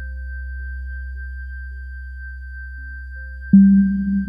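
Teenage Engineering OP-Z synthesizer playing a quiet generative ambient sequence: a low steady drone and a thin high held tone under sparse, soft short notes at changing pitches. About three and a half seconds in, a louder note with a rougher, grainy texture comes in suddenly.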